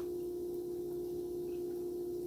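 A steady, unwavering mid-pitched hum with a few fainter tones above it.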